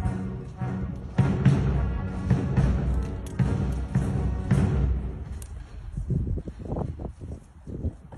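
Band music with a steady drum beat, fading out about five seconds in and leaving a few scattered thumps.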